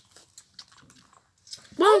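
Faint clicks and soft crackle from a smartphone being handled and its screen touched. A child's voice starts near the end.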